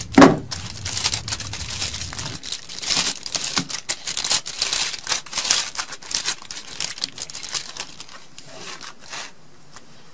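Aluminium foil crinkling and crumpling in the hands as a hole is torn in it and it is pressed back around a cell phone: dense irregular crackling that thins out and stops about a second before the end.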